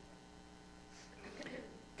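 Quiet room with a steady low electrical mains hum, and a faint soft sound about a second and a half in.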